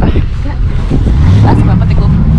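Wind buffeting the camera's microphone, a loud uneven low rumble, with indistinct voices mixed in.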